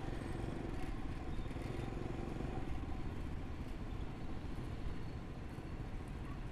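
Steady city street traffic, mostly motorbikes, running by with a low rumble.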